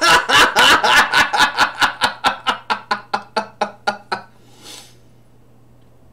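A man laughing hard in a rhythmic run of about five bursts a second that fades out over about four seconds, ending in a breathy exhale.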